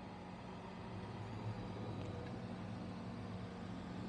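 Frezzer Pro 25L 12 V compressor cool box running, a steady low hum from its compressor and fan that is fairly modest, with road traffic noise mixed in. The compressor is running continuously while it pulls the box's temperature down.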